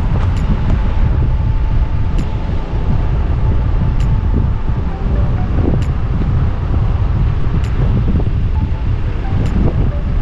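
Strong wind buffeting the microphone: a loud, steady, fluttering low rumble.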